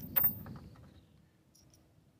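A single short click of small steel rifle parts, a G43 bolt and its locking flap, as the flap is fitted into the bolt, followed by faint handling.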